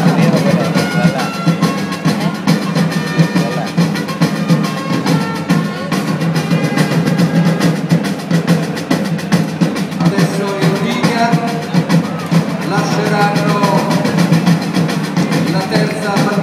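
Music with melodic instruments over a busy drum beat with snare rolls, loud and unbroken.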